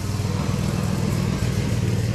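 Diesel engine idling steadily, a low, even rumble.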